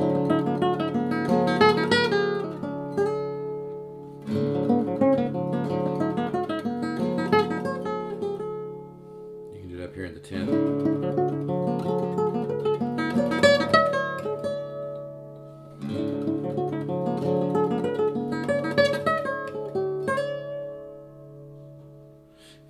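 Solid-wood nylon-string classical guitar in an altered tuning (E B F# D A D), played fingerstyle as a melodic right-hand technique exercise. The same pattern repeats about every six seconds at different spots on the neck, each time a quick run of plucked notes that rings on and fades.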